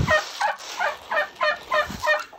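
Turkey hens calling in a quick run of short notes that fall in pitch, roughly four a second.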